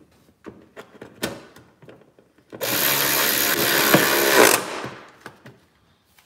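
A few light clicks and knocks of handling, then a cordless ratchet runs for about two seconds, driving a bolt home.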